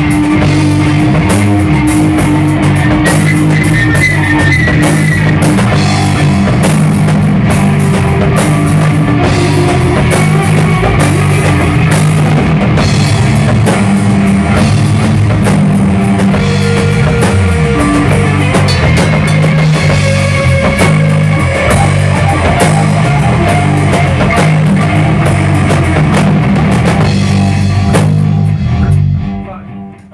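A live rock band of electric guitar, electric bass and drum kit playing a song at full volume. Near the end the band stops and the sound dies away.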